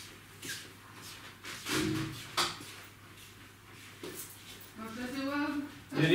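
Indistinct household sounds: a few knocks and a louder thud about two seconds in, with a sharp click just after, then a short stretch of a person's voice near the end.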